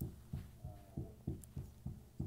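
Faint, evenly spaced low thumps, about three a second, like a muffled beat.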